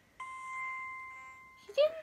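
An electronic chime from a small handheld gadget's speaker: one held tone that swells and then fades away over about a second and a half.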